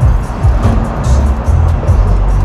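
Background music with a deep bass line that steps between notes, over a ticking beat.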